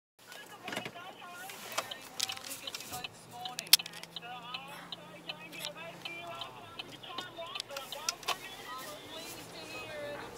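Indistinct talking inside a car cabin, with scattered sharp clicks and knocks; the loudest knock is about four seconds in. A low steady hum runs underneath for a few seconds.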